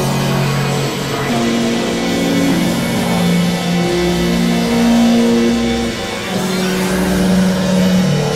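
Experimental electronic drone music: overlapping held synthesizer tones in the low-middle range, each moving to a new pitch every second or two, over a noisy hiss.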